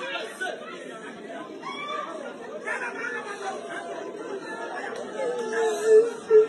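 Several people talking over one another in a low chatter of voices, with one voice getting louder near the end.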